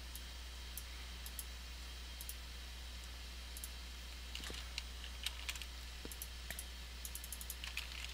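Faint, scattered computer keyboard keystrokes and mouse clicks, sparse at first and coming more thickly from about halfway through, over a steady low hum.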